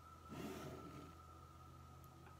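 Near silence: room tone with a faint steady hum, and one soft, brief sound about half a second in.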